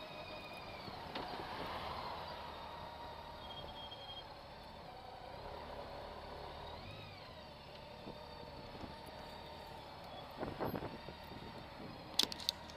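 Honda Gold Wing motorcycle running at low speed, its engine and road noise a low, steady hum through the camera's housing as it rolls off the road. A few sharp crackles near the end as the tyres reach gravel.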